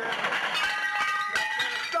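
Glass bottles clinking and clattering as they are knocked about in a scuffle, with a couple of sharp knocks.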